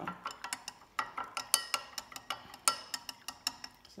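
Metal teaspoon clinking against the inside of a drinking glass as Milo powder is stirred briskly into water: rapid, uneven clinks, a few louder ones ringing briefly.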